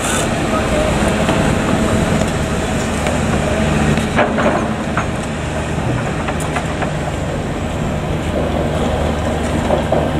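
Construction-site machinery running: a steady diesel-engine hum with a few sharp metallic knocks about four to five seconds in.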